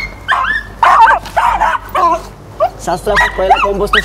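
Short dog-like barks and yelps in quick succession, mixed with voices.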